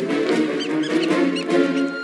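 Background orchestral score with three or four short, high-pitched squeaks about half a second to a second and a half in, the squeaking of a cartoon weasel.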